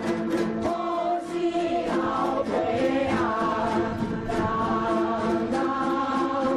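Dozens of yueqin (round-bodied Taiwanese moon lutes) plucked together in a steady rhythm, with a large chorus singing a Taiwanese folk song in unison over them.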